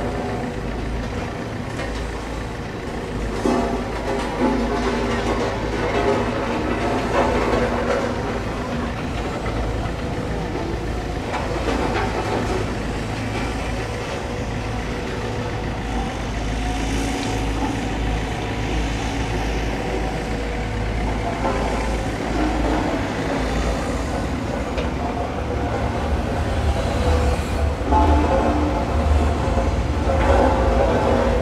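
Steady low rumble of traffic and construction machinery, with shifting engine hums over it.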